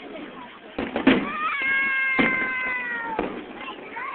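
Fireworks bursting overhead: four sharp bangs, the loudest about a second in, the others around two and three seconds. Over them a long high cry from a spectator is held for about two seconds, slowly falling in pitch.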